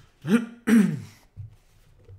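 A man coughing to clear his throat: two loud coughs in quick succession within the first second, the second one longer.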